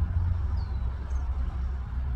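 Steady low rumble of a vehicle's engine running, heard from inside the cab.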